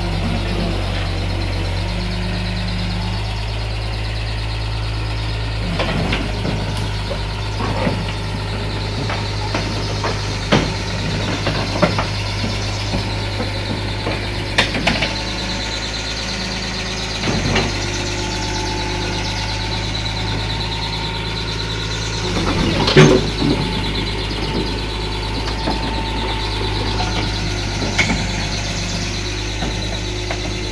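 Hitachi EX100-3 hydraulic excavator's diesel engine running steadily as the machine works its way down off a lowbed trailer. Sharp metal clanks and knocks come at intervals over the engine, the loudest about three quarters of the way through.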